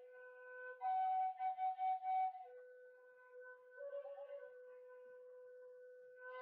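Background music: a solo flute melody of short repeated notes, settling about two and a half seconds in into a long held low note with a brief higher turn in the middle.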